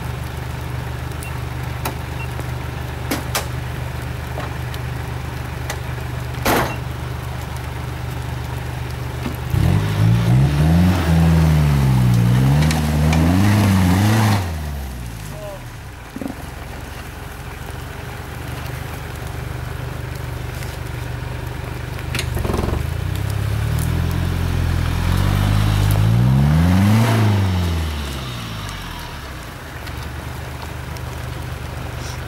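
Toyota 4x4's engine idling, then revving hard twice as it climbs a steep, muddy trail step. It rises and falls in pitch for about five seconds from about ten seconds in, and again for about five seconds near the end, with a few short knocks in between.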